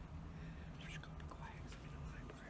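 Faint whispering over a steady low hum.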